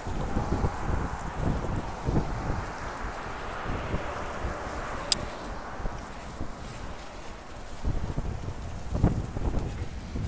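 Wind gusting over the microphone, an uneven low rumble, with one sharp click about five seconds in.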